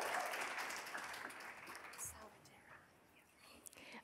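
Audience applause in a large hall, light and scattered, fading out about two and a half seconds in.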